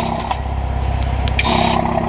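A 2020 Toyota Supra's 3.0-litre turbocharged inline-six idling through a Fi Exhaust Valvetronic system. The note stays steady, then grows louder and raspier about one and a half seconds in, as the exhaust valves are switched open.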